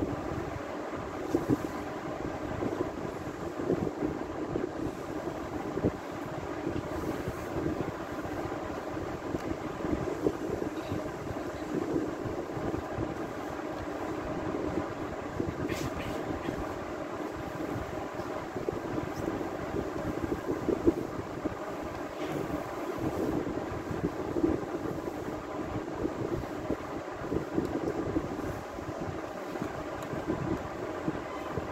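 Steady background hum with a constant level throughout and no speech, with a few faint clicks.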